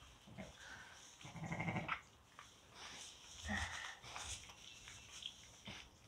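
A ewe in labour gives a low, rough moan as she strains, about a second and a half in, with a fainter sound about two seconds later. The moan comes during a difficult birth, with the lamb's head not coming out.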